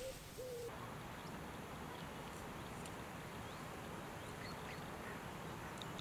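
Quiet, steady outdoor ambience by open water, with a few faint, scattered bird calls.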